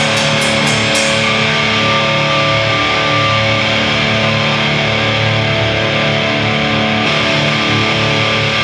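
Live heavy metal band with distorted electric guitars. A quick run of drum and cymbal hits in the first second gives way to a held chord that rings on steadily, the song's final sustained chord.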